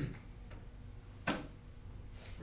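A single short cough about a second in, sharp at the start and quickly fading.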